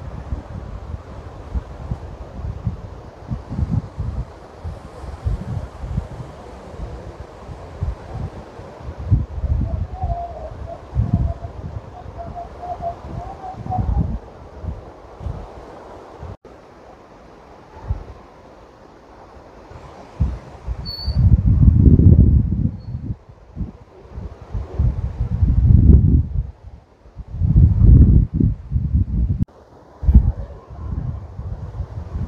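Wind buffeting the microphone in uneven gusts, with three strong surges in the last third.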